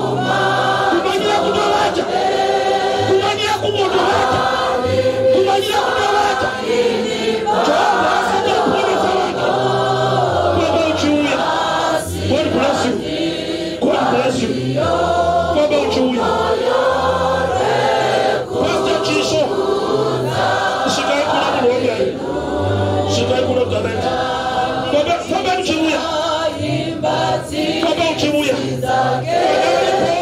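A man singing a gospel song into a microphone, with many voices singing along as a choir, over a low bass line whose notes change about every second.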